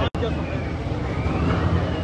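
Busy auction-hall noise: a steady low hum under crowd noise, with a faint distant voice rising and falling. A brief dropout right at the start.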